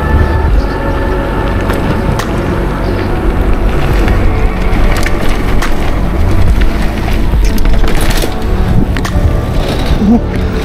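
Mountain bike rolling over asphalt, dirt and paving tiles: steady tyre and rolling noise with sharp knocks and rattles from bumps, over background music.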